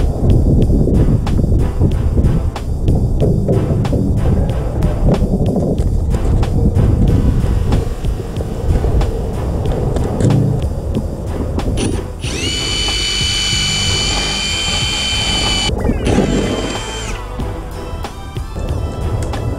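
Background music with a steady beat; about two-thirds of the way through, a Ryobi cordless drill runs at a steady speed with a high whine for about three and a half seconds, stops, then runs once more briefly.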